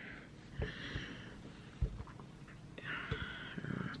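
Two quiet breaths or sniffs close to the microphone, with two soft handling bumps about half a second and two seconds in.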